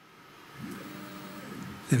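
Motorised Z-axis of a fiber laser marking machine moving the laser head up or down to change focus: a steady motor hum that starts about half a second in and lasts about a second and a half.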